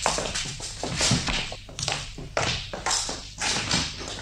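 Footsteps in a radio-drama sound effect: a run of light steps, about two or three a second.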